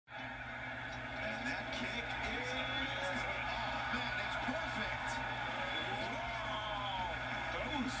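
Football game broadcast playing through a TV's speakers: a commentator talking over steady stadium crowd noise.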